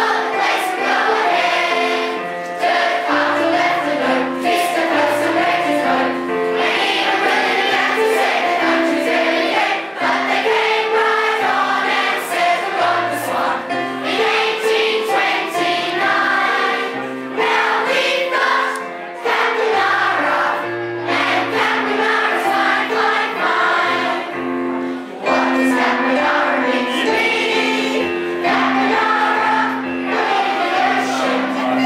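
A children's choir sings a school song together, with the standing audience joining in. The singing runs over an accompaniment with a low bass line.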